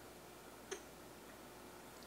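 Near silence: room tone in a pause between sentences, with one short faint click a little under a second in.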